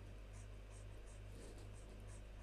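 Faint, quick scratching strokes of a stylus on a graphics tablet while shading, about three or four strokes a second, over a low steady hum.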